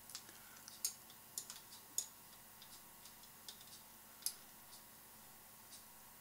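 Faint, scattered sharp clicks of a computer mouse and keyboard, about eight of them at irregular intervals, the loudest about two seconds in and a little after four seconds.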